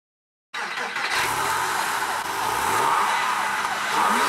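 A car accelerating hard: the engine revs up with rising pitch over a loud rush of road and wind noise. It starts abruptly about half a second in, and the pitch climbs again near the end.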